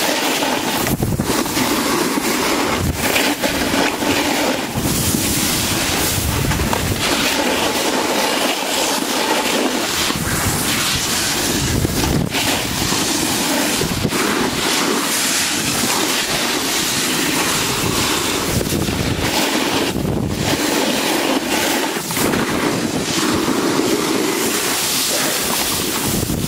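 Wind buffeting the microphone and the scraping hiss of a rider sliding fast over packed snow, steady and loud, with low rumbling gusts that come and go.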